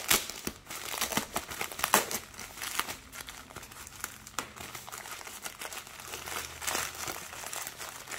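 Plastic padded mailer envelope crinkling as hands squeeze and work it open, with irregular crackles that are louder in the first couple of seconds and softer after.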